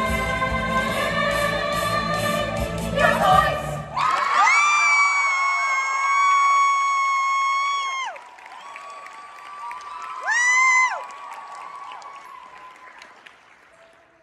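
Young ensemble singing with a backing track. About four seconds in the accompaniment drops out and the voices hold a long final note, which ends about four seconds later; a short high vocal cry follows near the end before the sound fades.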